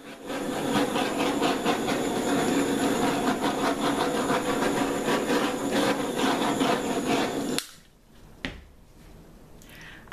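Handheld butane torch burning with a steady hiss for about seven and a half seconds as it is passed over wet acrylic pour paint to pop air bubbles, then shut off abruptly. A single click follows about a second later.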